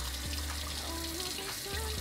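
Kitchen faucet running steadily into a stainless steel sink, pouring onto a wet puppy, with background music underneath.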